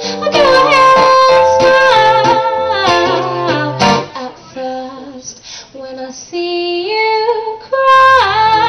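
Woman singing a pop song live into a microphone over guitar accompaniment. The music drops back for a couple of seconds midway, then the voice returns with held notes.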